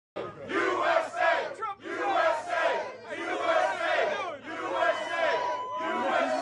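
Crowd of people cheering and shouting, many voices at once, rising and falling in waves.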